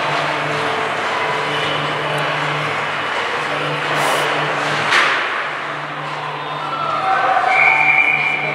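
Ice hockey game sound in an arena: skates scraping the ice, a sharp stick-or-puck clack about five seconds in, and spectators' voices over a steady low hum. A steady whistle blast near the end stops play.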